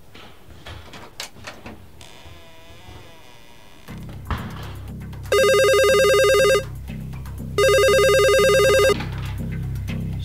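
A telephone rings twice, two loud electronic rings of about a second and a half each, a second apart, over a low pulsing music score that comes in about four seconds in. Before the music, a few faint clicks of a door handle.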